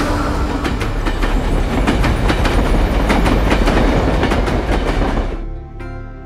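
Diesel-hauled train running past, its wheels clattering over the rail joints on top of a loud steady rumble; the sound cuts off suddenly near the end.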